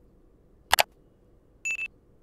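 Subscribe-animation sound effects: a sharp mouse click about three-quarters of a second in, then a short high beep in two quick pulses near the end.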